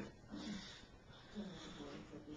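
A man's faint breathing, two short breaths, over quiet room tone.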